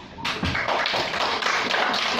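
A roomful of people clapping, starting suddenly about a quarter second in and keeping up steadily.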